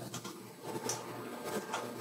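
Quiet room tone in a pause between speech, with a few faint small clicks and one brief faint high blip about a second in.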